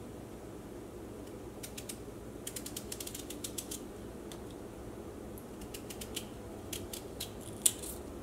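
A knife slicing thin rounds from a raw peeled potato: bursts of short crisp clicks in quick runs, with one sharper click near the end.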